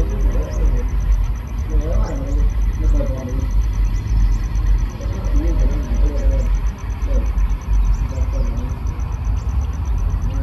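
Steady low rumble of a slow-moving diesel train during shunting, with voices talking over it throughout.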